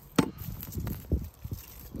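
Garden fork digging into soil to lift garlic plants: one sharp crunch as the metal tines go in just after the start, then several soft dull thuds of earth being levered and turned.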